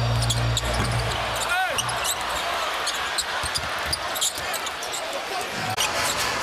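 Arena sound of a live NBA game: steady crowd noise with a basketball dribbling on the hardwood court and sneakers squeaking, one squeak standing out about a second and a half in. A low steady hum underneath cuts out about a second and a half in.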